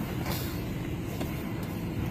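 Motor vehicle engine running with a steady low rumble, heard from inside the cabin, with a short hiss about a third of a second in.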